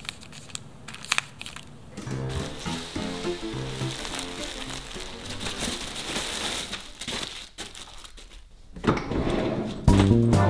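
Crinkling of plastic zip-lock bags being handled, with a few sharp clicks at first. Background music with stepped notes comes in about two seconds in.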